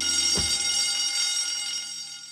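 A bell ringing, starting suddenly and carrying on steadily, with a low thump about half a second in.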